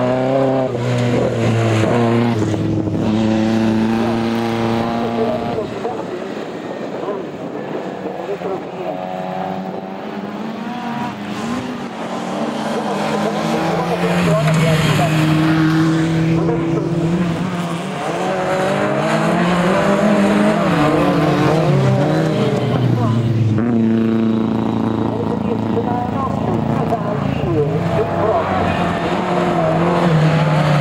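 Autocross race cars' engines running hard on a dirt track. Their pitch climbs in steps and drops several times as they rev up through the gears and back off.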